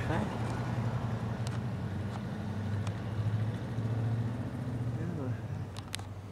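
A motor vehicle's engine running steadily with a low hum, and a few faint clicks over it.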